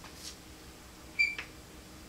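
A short high-pitched squeak about a second in, followed by a brief scrape: a writing stroke on the board as the lecturer draws. Otherwise only a faint steady room hum.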